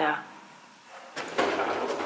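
A last spoken word, a short quiet, then about a second of scraping, rustling noise in the second half.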